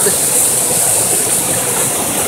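Rocky mountain stream rushing over boulders in small rapids: a steady hiss of moving water.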